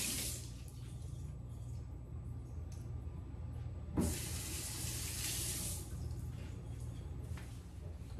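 Kitchen faucet running into a stainless-steel sink, hands working under the stream. A sharp knock about four seconds in, after which the water is louder for about two seconds before easing off.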